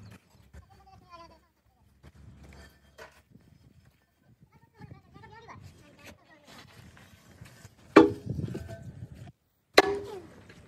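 A heavy brake drum being rolled and tipped over lumps of coal and set down on the ground, with scraping and rattling, then two loud clunks near the end. The first clunk rings on for about a second.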